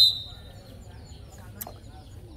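Referee's whistle: one short, high-pitched blast that dies away within half a second. Low background voices follow, with one faint sharp tap about a second and a half in.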